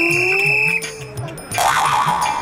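Edited-in comic sound effect: a held high tone over a slow upward glide in pitch, lasting under a second, set over background music. A short noisy burst comes near the end.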